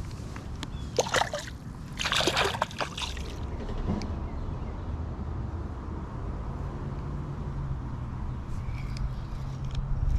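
Small splashes in the creek water, one about a second in and a longer, stronger one around two to three seconds in, as a small sunfish held over the water is let go back into the creek. A low steady hum runs underneath in the second half.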